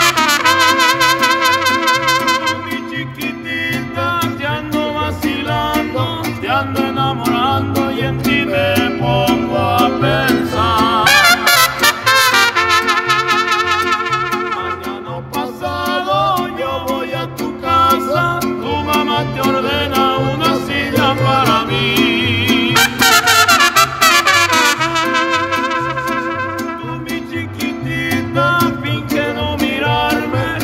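Mariachi band playing live: violins, vihuela and guitarrón keep a steady rhythmic accompaniment, while wavering trumpet phrases return over it three times.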